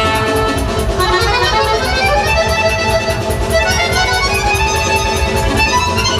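Chromatic button accordion playing a fast, busy melody with many quick runs of notes, over a steady pulsing low beat.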